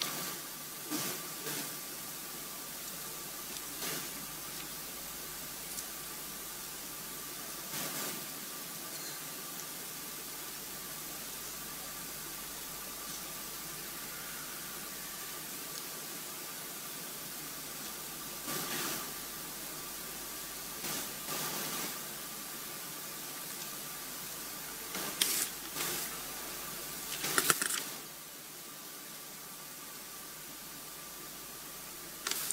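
Open podium microphones picking up steady hiss with a faint steady tone, broken by scattered short clicks and knocks, the loudest cluster near the end.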